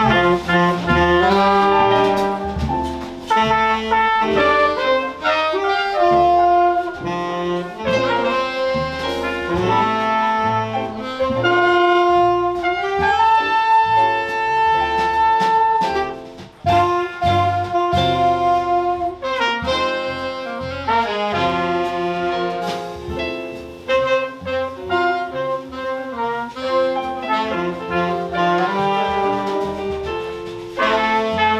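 Live jazz band playing: two saxophones and a trumpet carry the melody together over piano, electric bass and drums. About halfway through the horns hold one long note, then the line moves on after a brief drop.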